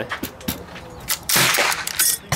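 A single rifle shot about one and a half seconds in, its report dying away quickly, with a few faint clicks before it.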